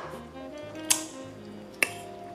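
Soft background music with sustained notes changing every so often, and two short sharp clicks, about a second in and near the end.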